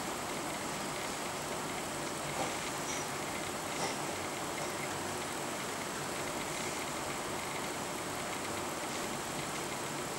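A steady, even hiss with no clear tone, broken by two faint clicks, one about two and a half seconds in and one about four seconds in.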